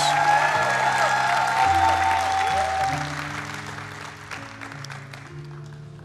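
Congregation applauding over soft background music of long held chords. The applause is loudest at the start and dies away over about four seconds, leaving the chords.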